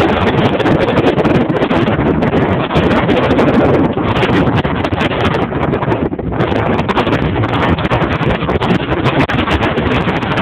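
Wind buffeting a phone's microphone over the road rumble of a Honda CR-V driving downhill on an unpaved road; a loud, harsh, steady noise with no engine note standing out.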